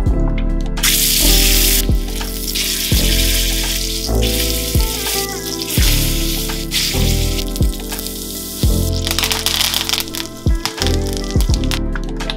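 Background music with a steady beat, over the sizzle of a rack of lamb searing in hot oil in a steel frying pan. The sizzle starts suddenly about a second in and drops away about nine seconds in.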